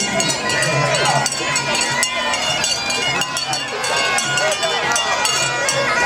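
Festival crowd chatter, many voices overlapping, with frequent small clinks or bell strikes and steady held tones underneath.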